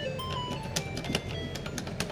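Electronic fruit slot machine (maquinita) beeping its game tune as its lamps run round the symbol board: a quick string of short beeps at changing pitches, with rapid clicking.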